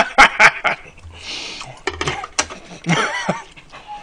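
A man laughing loudly in short bursts, a breathy rush of air about a second in, then another loud laugh about three seconds in.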